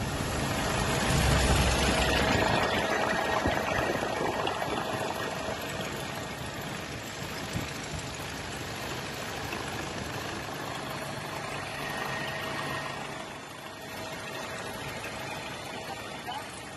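Helicopter engine and rotor noise heard from inside the cabin: a steady rumble with a faint hum, louder in the first few seconds.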